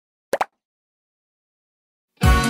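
Two quick cartoon-style pop sound effects in close succession, each rising in pitch, about a third of a second in.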